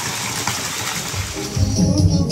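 Steady rush of a stream of water pouring at a sulfur spring bath, cut off about one and a half seconds in by music with a strong bass beat.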